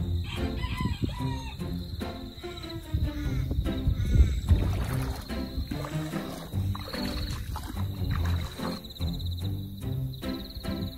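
Background music, with a rooster crowing over it around three seconds in.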